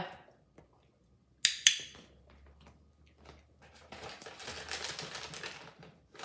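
A training clicker snapping twice in quick succession, press and release, marking the cat's correct "give me five". A couple of seconds later comes a stretch of rapid crackly ticking and rustling lasting about two seconds.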